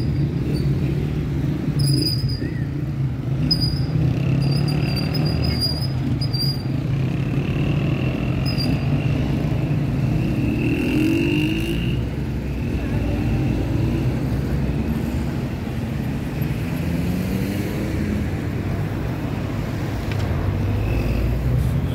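City street traffic: a steady rumble of car engines idling and moving through an intersection, with one engine rising in pitch about ten seconds in as a car pulls away. Short high chirps sound now and then in the first half.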